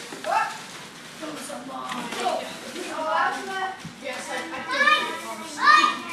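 Several young children shouting and squealing excitedly at once, in overlapping calls that rise and fall in pitch, the loudest one near the end.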